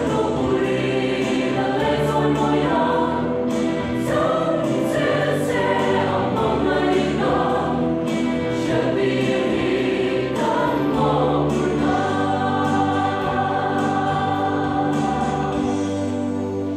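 Mixed choir of men's and women's voices singing a gospel hymn in harmony, settling into a long held chord in the last few seconds.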